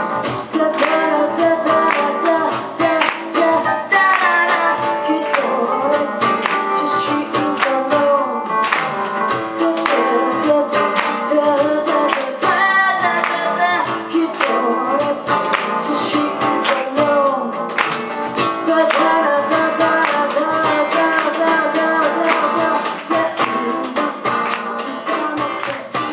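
A woman singing live into a microphone, accompanied by a plucked and strummed guitar.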